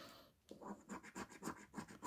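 Scratch-off coating being scratched from an Instant £100 scratchcard. A quiet, rapid run of short rasping strokes, about six a second, begins about half a second in.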